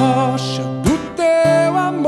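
A live band plays a Brazilian Catholic worship song, with drums, bass, keyboard and acoustic and electric guitars, under a male lead voice. A drum hit falls about a second in.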